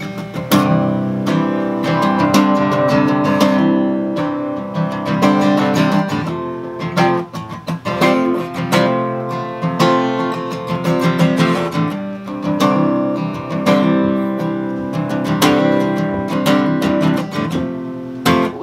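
Solo steel-string acoustic guitar, picked and strummed in a steady rhythm as the instrumental introduction of a song.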